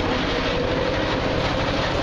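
Small engine of an open motorised cart running steadily while the cart drives along, with rattling and road noise from the ride.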